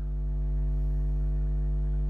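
A steady low electrical hum with a buzz of overtones running under the recording.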